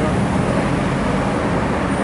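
Road traffic going by on a city street, a steady noise of cars passing with no single event standing out.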